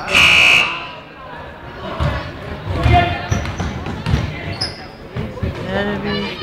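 Gym scoreboard buzzer sounding once for under a second near the start, the loudest sound here, followed by a few thumps of a basketball bouncing on the court amid crowd voices.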